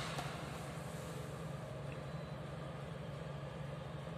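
Steady low background hum with hiss, unchanging throughout.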